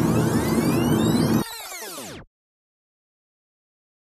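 An edited-in sound effect of many gliding tones that arc and then fall steeply in pitch, dying away about two seconds in, laid over the car's cabin noise. The cabin noise cuts off about a second and a half in, and the rest is dead silence.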